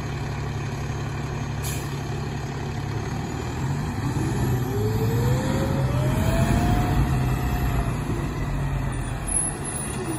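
Fire department aerial ladder truck's diesel engine running at a low idle, then revving up with a rising whine about four to five seconds in as the truck pulls away, before easing off near the end.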